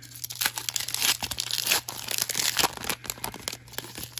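A foil trading-card pack wrapper being torn open and crinkled by hand, a dense run of irregular crackling and tearing.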